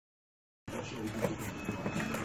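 Dead silence for about two-thirds of a second. Then the noisy sound of a phone recording comes in: a PlayStation 4's cardboard retail box being handled, with light knocks and rustles over room noise and faint voices.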